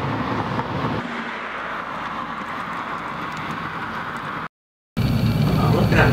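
Steady outdoor traffic noise, its low rumble thinning about a second in. It cuts out to a brief silence near the end, then gives way to louder room tone with a faint high whine.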